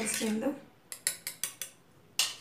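Wire whisk clinking against an aluminium bowl while mixing milk and junnu powder: a quick run of about five sharp metal ticks.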